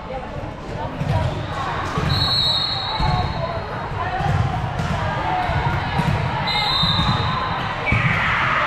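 Busy volleyball hall: repeated dull thuds of volleyballs about once a second, and two short whistle blasts, about two seconds in and again near the end, over steady chatter of voices in an echoing hall.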